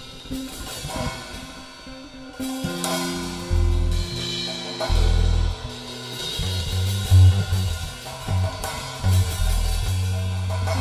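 Free-jazz improvisation: a drum kit playing loose, unmetred hits and cymbal washes while a bass plays long, sustained low notes. It grows louder about two and a half seconds in, when the bass notes come in strongly.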